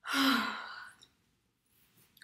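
A woman sighs aloud once, a breathy sigh with voice in it, starting abruptly and fading away within about a second.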